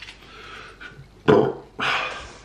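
A man burps loudly once, a little past the middle, after drinking, followed by a short breathy sound near the end.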